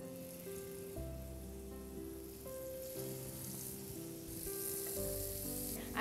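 Small sweet potato tikkis sizzling as they go into hot oil in a shallow frying pan, the sizzle growing stronger as more are added. Soft background music plays underneath.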